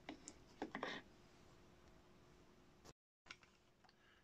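Near silence: room tone, with a few faint clicks in the first second and a brief total dropout a little before three seconds in.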